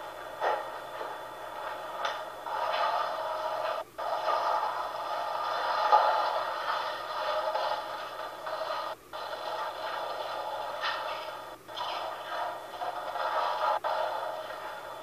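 Audio played through a baby monitor's small speaker: a thin, hiss-like noise that swells and fades irregularly and cuts out briefly a few times.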